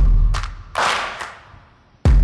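Sound design from an electronic intro track: a deep bass impact hit at the start, a sharp click, then a whoosh that fades away toward the end.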